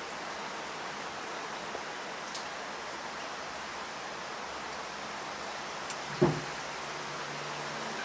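A steady, even hiss of background noise, with a few faint small clicks from the pliers and the metal hooks and swivel being handled, and one short louder knock about six seconds in.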